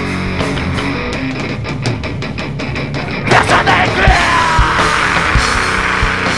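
Live rock band playing: distorted electric guitars over a drum kit, the sound swelling louder and fuller about three seconds in.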